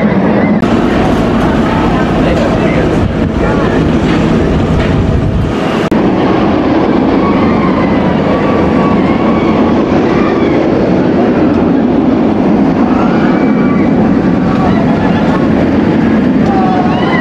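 Steel inverted roller coaster train running along its track, a loud steady roar, with people's voices and yells over it.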